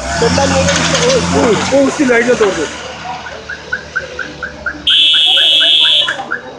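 Roadside traffic noise with people shouting and a laugh over a steady low vehicle engine hum. From about halfway a chirping electronic tone repeats about three times a second, and near the end a loud, shrill vehicle horn or alarm tone sounds for about a second.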